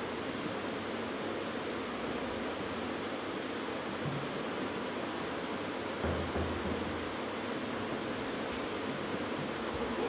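Steady background hiss of room noise, with a brief low bump about six seconds in.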